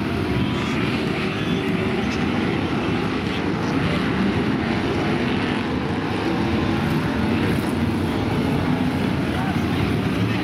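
Several BriSCA F1 stock cars racing, their big V8 engines running together in a steady loud mix.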